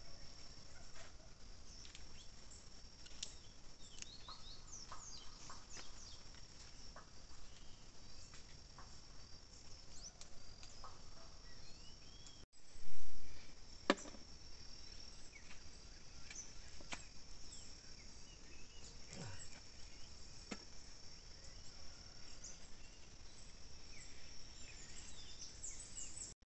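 Crickets trilling steadily on one high pitch, with faint scattered clicks and rustles. A brief loud noise breaks in about thirteen seconds in.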